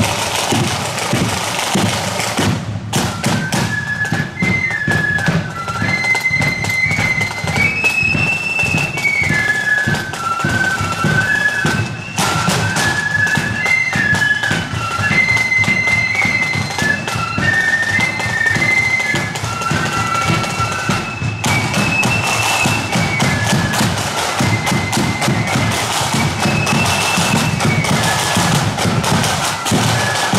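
Marching flute band playing a tune: a high flute melody over snare and bass drums, with the drums alone for the first few seconds before the flutes come in.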